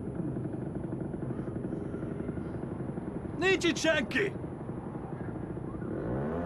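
A steady low mechanical rumble, like a running engine or rotor, with a short high-pitched cry from a voice about three and a half seconds in.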